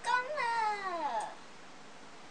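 A young girl's drawn-out wordless exclamation, its pitch rising slightly and then sliding down over about a second.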